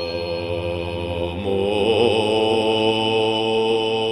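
Background music of a chanted mantra: a voice holds long, drawn-out notes over a low steady tone, wavering in pitch about halfway through.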